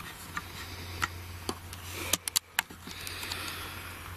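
Handling noise of a handheld camera: scattered clicks and knocks, with a quick cluster of them about two seconds in, over a steady low hum and hiss.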